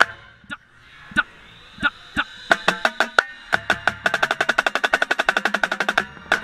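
Marching snare drum struck with sticks, close up: a few scattered strokes over the first two seconds, then a fast, dense run of strokes from about two and a half seconds in.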